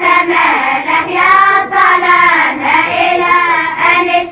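A group of children's voices chanting in unison, reciting a memorized text aloud together in a drawn-out, melodic way without pause.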